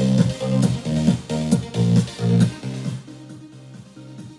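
Electronic dance music playing through a Tribit StormBox Blast portable Bluetooth speaker, with a heavy pulsing bass beat. About three seconds in, the bass drops out and the music gets much quieter.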